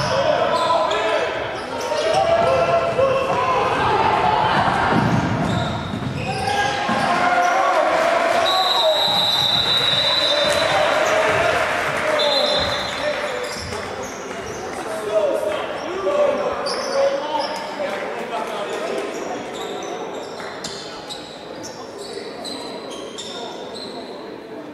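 Gymnasium game noise at a basketball game: many voices from players, benches and crowd echoing in the hall, with a basketball bouncing on the hardwood floor. A high shrill whistle sounds for about two seconds some eight seconds in and again briefly about four seconds later, typical of a referee's whistle stopping play; the noise eases toward the end.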